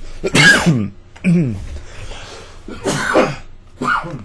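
A man coughing and clearing his throat in about four short, loud bursts roughly a second apart, the first the loudest.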